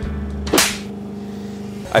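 Background music with one short swish, like a whoosh edit effect, about half a second in.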